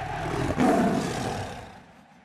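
Tiger roar sound effect, loudest about half a second in and then fading away.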